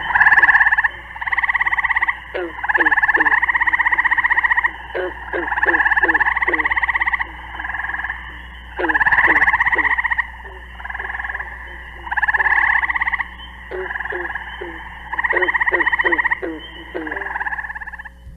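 Gray tree frogs (the tetraploid Hyla versicolor) calling: a string of short, resonating, bird-like trills, each about a second long or less, repeated with short gaps and sometimes overlapping. Short lower chirps sound between the trills.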